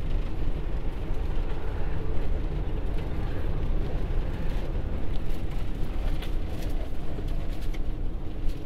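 Cabin noise inside a small van on the move: a steady low engine and road rumble, with a few light knocks and rattles in the second half.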